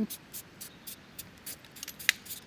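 A circular polarizer filter being screwed onto its metal step-up ring by hand: a run of small, sharp scraping ticks from the threads, about four a second.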